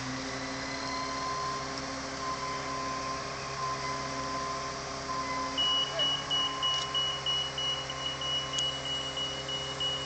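Truck-mounted crane's diesel engine running steadily under load while the crane swings a lifted caboose body. About halfway in, a high warning beeper starts, beeping rapidly at about three beeps a second.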